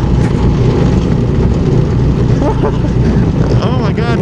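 Go-kart's small engine running steadily under throttle as the kart drives around the track, heard from the driver's seat as a dense low rumble, with some wind on the microphone.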